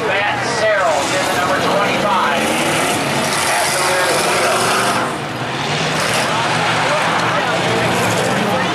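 Several race cars' engines running and revving as they circle the track, the pitch rising and falling, with a brief lull about five seconds in; voices in the crowd mixed in.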